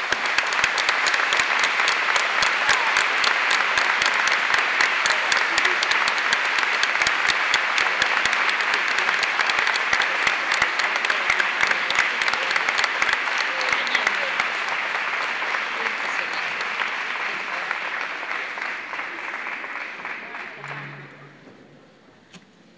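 Audience applauding: dense, sustained clapping that dies away near the end.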